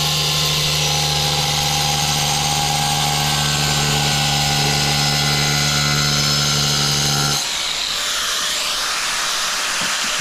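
Angle grinder with a diamond blade cutting porcelain tile, running steadily under load. About seven seconds in the motor cuts out and the blade winds down with a falling whine.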